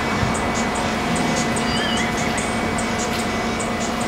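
Otokar city bus idling at a stop: a steady engine and air-conditioning hum under a constant wash of noise.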